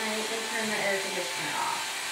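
A small electric motor whirring steadily, with faint talk behind it.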